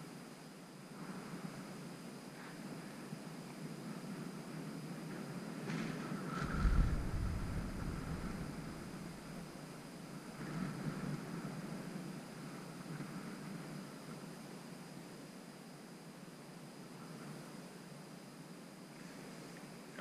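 Wind buffeting the microphone, a steady rushing noise with a strong low gust about seven seconds in and a smaller one a few seconds later.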